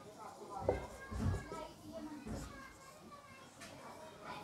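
Faint children's voices chattering in the background, well below the level of nearby speech.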